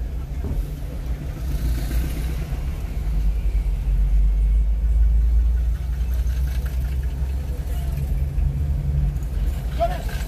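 Car interior road noise: a steady low engine and tyre rumble while driving, a little louder in the middle stretch.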